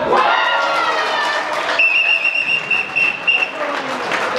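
Voices at a football match, then a shrill whistle blown in one long blast starting a little under halfway in and lasting just under two seconds, with a couple of brief breaks near its end.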